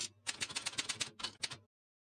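Manual typewriter keys striking paper in a quick run of clacks, stopping suddenly about a second and a half in.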